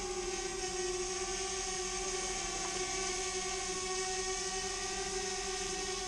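DJI Spark quadcopter flying, its motors and propellers humming at a steady pitch with several tones at once.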